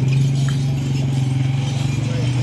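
A vehicle engine running with a steady low hum, with a few faint clinks.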